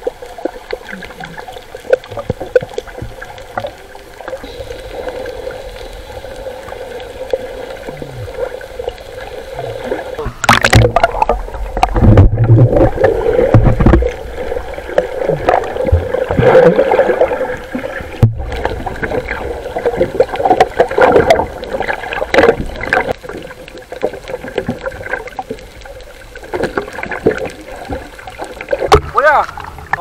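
Water sloshing and splashing, heard muffled through a camera's waterproof housing as it moves under and at the surface among snorkelers. There is a sudden loud splash about ten seconds in, and the busiest splashing comes just after it.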